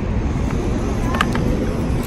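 A steady outdoor background roar, heaviest in the low end, with a brief faint rising chirp and a couple of small clicks about a second in.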